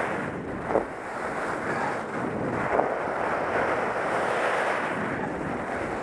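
Steady rush of wind on a helmet camera's microphone during a downhill ski run on groomed corduroy, mixed with the hiss of skis sliding on the snow.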